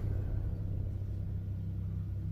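Low, steady rumbling drone in a film trailer's sound track, with a faint hum held on a few low notes.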